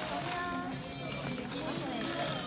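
Background voices of children and adults talking at a distance, with music playing underneath.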